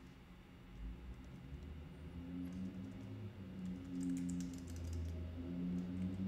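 Faint computer keyboard key clicks, scattered, with a cluster about four seconds in, over low droning tones that shift in pitch.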